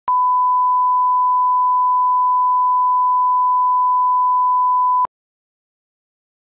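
Line-up reference tone played with colour bars: one steady, unwavering beep held for about five seconds, with a click as it starts and as it cuts off.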